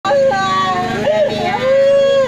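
A woman wailing in grief, with long, high, drawn-out cries that bend up and down in pitch, over a steady low motor hum.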